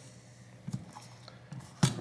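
Small tools and parts handled on a workbench mat during a tablet repair: a few faint clicks and taps, with one sharper click near the end.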